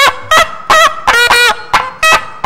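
Nadaswaram playing a Carnatic temple melody in short, heavily ornamented phrases, its notes bending and sliding with a loud, reedy, honking tone.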